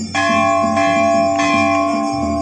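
Large hanging brass temple bell struck a moment in and struck again twice, about every two-thirds of a second, ringing on between strokes with a steady cluster of tones. A faint rhythmic beat runs underneath.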